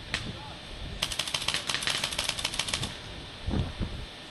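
Paintball marker firing: a single shot just after the start, then a rapid string of about twenty shots, about ten a second, for about two seconds.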